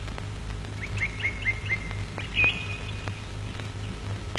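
A bird chirping: a quick run of about five short chirps, then one longer, higher note.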